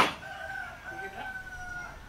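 A sharp click right at the start, then a rooster crowing once, one drawn-out call lasting most of the two seconds.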